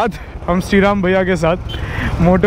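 A man's voice talking over the steady low rumble of a motorcycle riding in city traffic.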